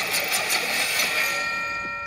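Film trailer sound effects: a rushing sweep, then from about halfway a sustained ringing chord of several steady tones.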